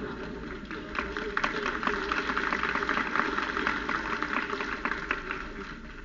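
Audience applauding in a lecture hall. The clapping swells about a second in, holds and tapers off near the end.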